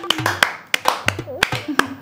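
Hand claps in a quick, uneven run, several a second, mixed with brief laughter.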